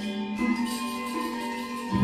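Gamelan ensemble playing slowly: struck bronze instruments ring with sustained, overlapping tones. A deep, pulsing low tone comes in near the end.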